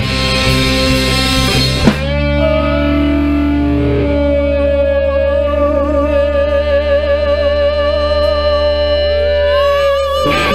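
Live rock band playing loud: about two seconds of full band with crashing cymbals, then an electric guitar holds one long sustained note that takes on a wavering vibrato, over a steady low chord. Near the end a second note slides up higher and wavers.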